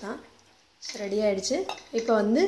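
Metal ladle clinking and scraping against a metal pot as thin dal is stirred and lifted, a few light clinks after a short pause, with a woman's voice talking over it.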